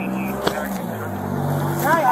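A motor vehicle's engine running close by: a low, steady hum that swells slightly in the second half, with a single click about half a second in.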